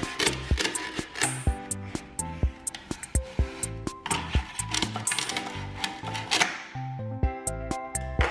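Upbeat background music with a steady beat, over the clicks and taps of a plastic toy knife on plastic toy pizza and short rasps of velcro as the slices are cut apart.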